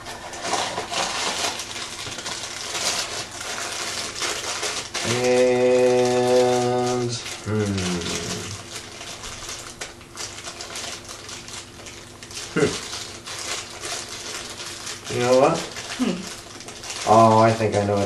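Crinkling and rustling of a Funko Mystery Minis blind box and its inner packaging being torn open by hand. About five seconds in, a long hummed note is held for about two seconds, and a few short vocal sounds follow near the end.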